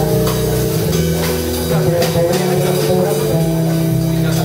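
A jazz band playing live at a jam session: held pitched notes over changing bass notes, with drum and cymbal strikes throughout.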